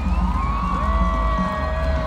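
Live rock band playing loud through a large outdoor PA, heard from far back in the audience: a heavy steady bass under long held melody notes that slide down at their ends, with the crowd faintly audible beneath.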